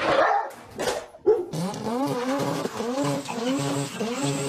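A dog vocalising: a brief noisy clatter in the first second, then a run of pitched calls that repeatedly rise and fall.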